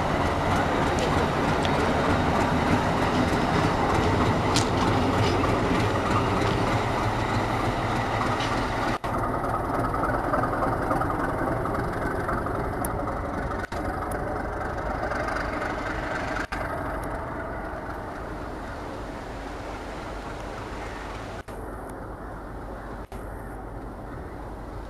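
WDS6 diesel shunting locomotive running light: its diesel engine and its wheels on the rails make a steady rumble that is loudest at first and slowly grows quieter. The sound breaks off abruptly several times where clips are joined.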